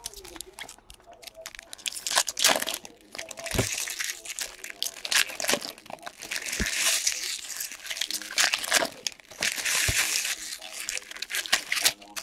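Foil wrappers of 2016-17 Upper Deck SP Authentic hockey card packs being torn open and crinkled by hand, a loud, dense crackling, with a few low thumps in between.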